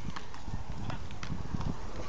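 Beach tennis rally: a few sharp knocks as solid paddles strike the ball, over a low rumble of wind on the microphone.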